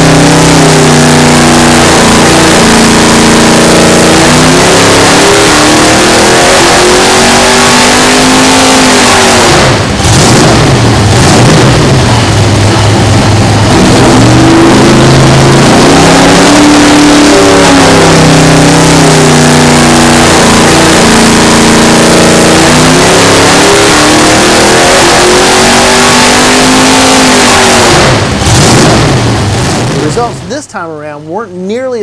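Naturally aspirated 665 cubic inch big-block Chevy V8 with open four-into-one headers running at full throttle on an engine dyno, its pitch climbing steadily as the rpm sweeps up during a power pull. The sound drops briefly about ten seconds in and again near the end, between pulls.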